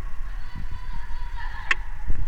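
Sneakers squeaking on a sports-hall floor during play: a drawn-out squeak that fades out over the first second and a half, then a short sharp squeak near the end.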